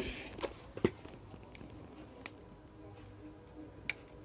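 Handling clicks and light knocks from a USB power bank and a DSLR camera being picked up and switched on: a sharp click at the start, two softer ones within the first second, a faint one past two seconds, and another sharp click just before the end.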